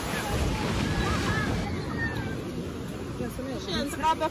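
Steady rush of splashing water and surf with wind on the microphone, and faint voices in the background; a voice comes through more clearly near the end.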